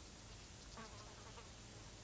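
Faint insect sounds over low hiss, with a few short, soft sounds from about a second in.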